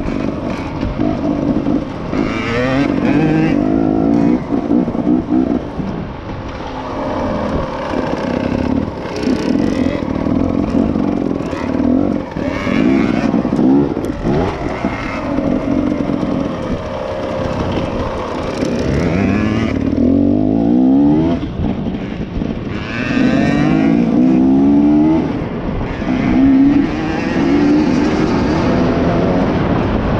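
KTM EXC 250 enduro motorcycle engine under way off-road, revving up and down with the throttle. The pitch climbs in several rising sweeps, notably past the middle and again a few seconds later.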